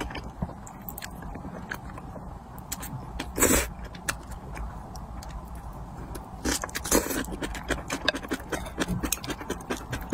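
Close-miked eating sounds of spicy instant noodles and kimchi: wet chewing and mouth clicks throughout, with a loud slurp about three and a half seconds in and a denser run of smacking clicks in the last few seconds.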